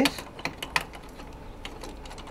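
A wrench working the mounting bolts of a new brake master cylinder tight: a few scattered, irregular metal clicks.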